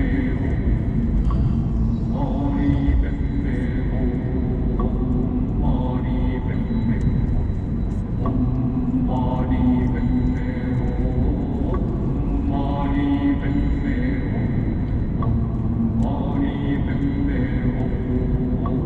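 Chanted vocal music, one voice holding sustained notes in phrases that return every few seconds, over the steady low road rumble of a moving Mercedes-Benz car.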